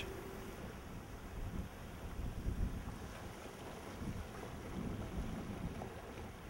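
Faint, uneven wind noise on the microphone over a low wash of water, as heard on a boat on open water.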